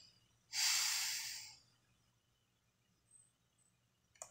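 A man's breath close to the microphone: one loud exhale about half a second in, lasting about a second and fading away.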